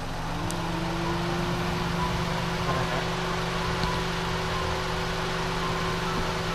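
Car engine idling with the air-conditioning compressor running, a steady mechanical hum. A tone rises during the first second and then holds steady.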